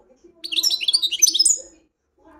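European goldfinch singing a short, loud burst of rapid high twittering notes. The burst starts about half a second in and lasts just over a second.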